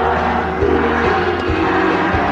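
Live 1980s Japanese pop band playing an instrumental passage with no singing: held chords over a steady low bass line, with occasional drum hits.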